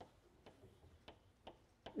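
Faint, irregular taps of chalk on a blackboard during writing, about half a dozen short clicks over near silence.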